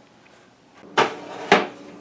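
Two sharp knocks about half a second apart, after a second of faint room tone.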